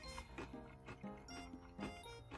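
Background music with crunching from banana chips being chewed, a crunch about every half second.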